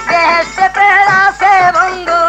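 Bengali jari gaan folk music with a wavering, ornamented melodic line.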